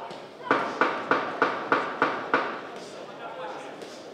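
Boxing ring bell struck seven times in quick succession, about three strikes a second, each strike ringing briefly, over a murmur of voices in a hall.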